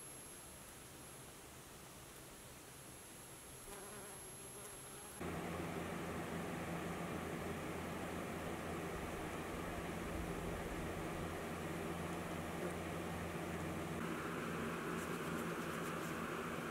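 Bumblebee buzzing close by, a steady low hum that starts suddenly about five seconds in, after a few seconds of faint quiet.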